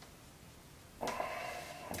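Near silence, then about a second in a man's voice holds a drawn-out, steady hesitation sound that runs straight into speech.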